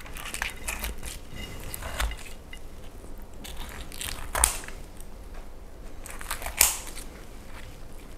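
Kitchen shears cutting into a whole roast chicken's crisp skin and flesh. A run of crunching snips is heard, with the sharpest about two, four and a half, and six and a half seconds in.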